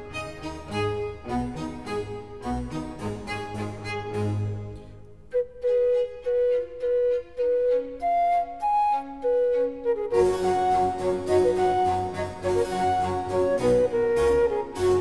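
Baroque flute concerto: a transverse flute with a baroque string ensemble and keyboard continuo. The full ensemble thins out about four to five seconds in to a sparse passage of separate held notes, then comes back in fuller about ten seconds in.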